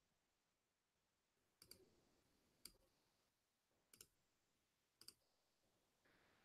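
Faint computer mouse clicks: four short clicks or quick double clicks, roughly a second apart, over near silence.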